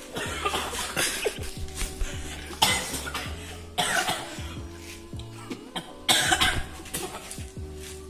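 A young man coughing hard in about five sudden bursts, set off by the heat of a Scotch bonnet pepper. A steady, relaxed instrumental music track plays underneath.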